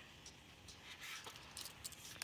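A few faint clicks from a thin metal pasta rod rolling dough on a wooden board. This is the 'fric fric' sound that gives the 'frekti frekti' pasta its name.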